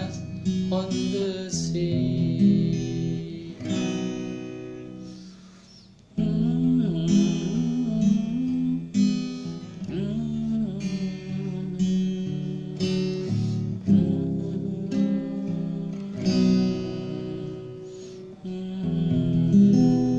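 Acoustic guitar strumming and picking chords in an instrumental passage of a ballad. The playing dies away to a quiet point about six seconds in, then picks up again.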